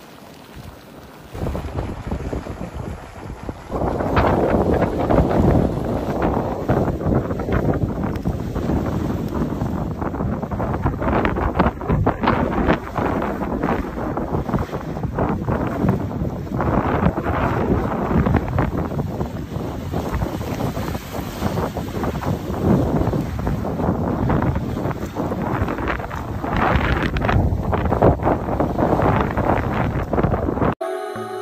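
Geyser erupting: boiling water and steam jetting out of the vent in a loud, continuous rush that swells about two seconds in and is full from about four seconds. Wind buffets the microphone over it.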